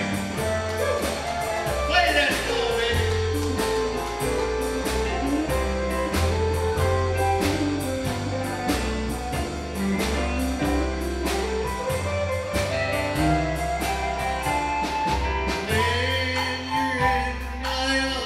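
Live country band playing an instrumental break: bass and drums keep a steady beat under a lead guitar line whose notes slide up and down in pitch.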